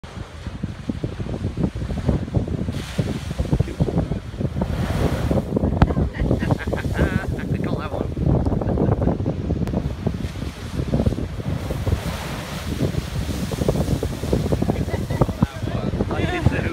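Rough storm sea surging and breaking in spray against a rocky ledge, with strong wind buffeting the microphone.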